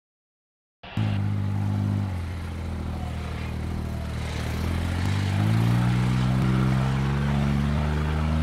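A car engine running as the vehicle drives, starting abruptly about a second in. Its pitch drops around two seconds in and rises again from about five seconds in, like a vehicle easing off and then speeding up.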